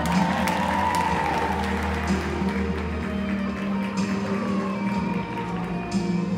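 Music for a synchronized skating routine playing over an ice arena's sound system, with sustained held tones that swell early on.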